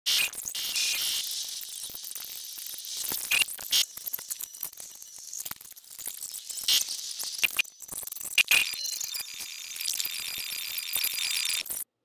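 A video's soundtrack played in reverse: a garbled, high-pitched jumble of backwards voices and clicks, with no intelligible words. It cuts off just before the end.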